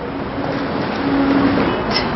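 Steady street traffic noise with a faint low hum, swelling slightly through the middle.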